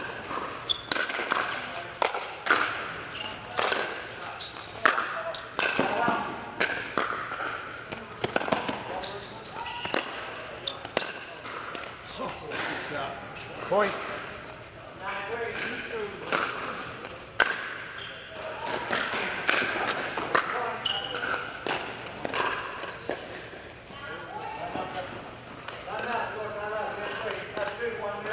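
Pickleball rally: paddles strike a plastic ball in sharp pops roughly once a second, in a large indoor hall, over indistinct voices.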